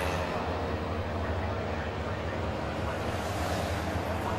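Citroen 2CV race cars' air-cooled flat-twin engines running on track, heard as a steady drone under a hiss of outdoor noise.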